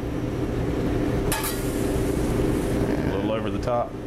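A steady low mechanical hum, with a single sharp metallic clink about a second in as a metal spatula and skillet touch a ceramic plate, and a brief voice near the end.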